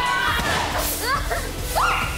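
Excited voices shouting over background music with a steady beat, with one sharp rising cry near the end.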